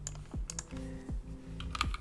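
A few irregular keystrokes on a computer keyboard as a short terminal command is typed.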